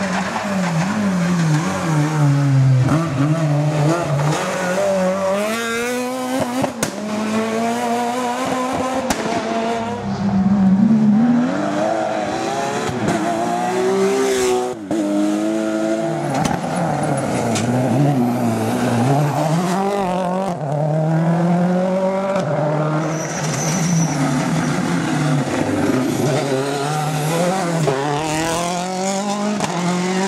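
Rally cars at racing speed one after another, engines revving up and dropping back through gear changes again and again, the sound breaking off abruptly a few times between cars.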